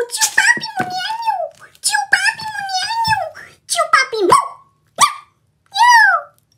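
High-pitched, wordless vocal cries: short whining phrases that glide up and down in pitch. They come in a run over the first four seconds or so, then stop, and one more brief cry comes at the very end.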